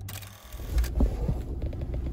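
Low steady rumble inside a van's cab, with a few soft knocks about a second in.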